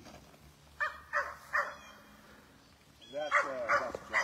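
Dog barking in short, separate barks: three quick ones about a second in, then a few more near the end.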